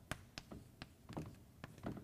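Chalk on a blackboard during writing: a string of short, sharp taps as the chalk strikes and lifts off the slate.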